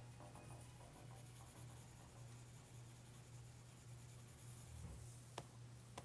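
Faint stylus strokes on a tablet's glass screen over a steady low hum, with one sharper tap about five seconds in.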